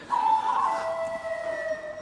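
A sustained high howling tone opening a TV promo's soundtrack: it wavers, then drops to a lower held pitch about two-thirds of a second in.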